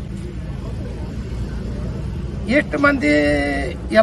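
Low, steady rumble of a road vehicle going by outdoors, heard under a pause in a man's speech. He resumes about two and a half seconds in, drawing out one long vowel.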